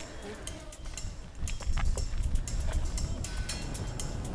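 Slow, careful footsteps on loose stony gravel, small stones clicking and crunching irregularly underfoot, over a low rumble of wind on the microphone.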